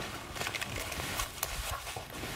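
Soft rustling and a scatter of small clicks: over-ear headphones being picked up and fitted over the ears, with clothing brushing a clip-on microphone.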